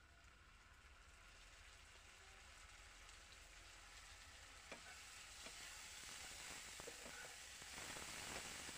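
Sliced onions frying in oil in a frying pan, a faint sizzle that grows steadily louder, with a few light clicks of a metal spatula against the pan in the second half.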